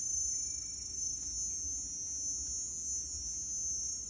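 A steady, high-pitched chorus of insects, with a low rumble underneath.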